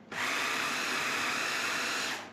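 Braun mini food processor switched on just after the start, its motor and blade running steadily at speed as it grinds cooked cauliflower, shallots and grated cheese.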